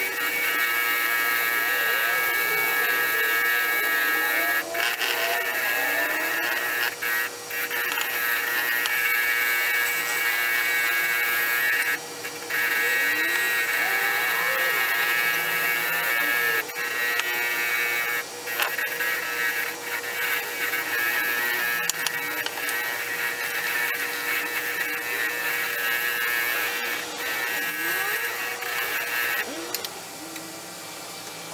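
Small bench motor spinning a brass wire wheel against a steel ball peen hammer head: a steady hum with constant scratchy brushing, dipping briefly a few times.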